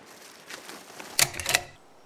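Faint handling noise, then a couple of sharp plastic clicks about a second and a half in, as a trail camera's case latches are worked.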